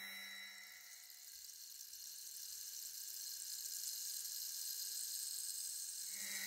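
A soft, low sustained tone with overtones fades out within the first second, the end of the label's sound logo. After it there is only a faint high hiss that slowly swells.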